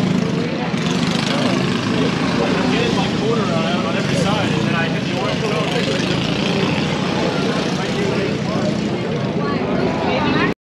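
Racing kart engines running, mixed with indistinct overlapping voices.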